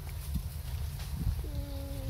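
Low rumble of wind and handling on the camera microphone as it swings about. About two-thirds of the way in, a steady, even-pitched whine starts and holds for over a second.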